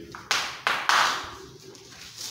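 Chalk on a blackboard: about three quick tapping, scraping strokes in the first second as a word is written, fading into a quieter stretch.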